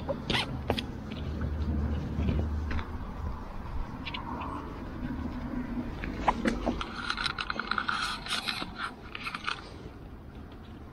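Nylon straps on a Kriega Overlander-S soft pannier being undone by hand: a few sharp clicks from the buckles within the first second and again about six seconds in, then webbing scraping through its buckles with fabric rustling for a couple of seconds near the end.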